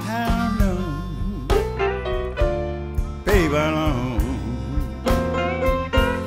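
Blues band playing an instrumental passage of a slow piano blues: piano, bass and drums under a lead line of bending, wavering notes.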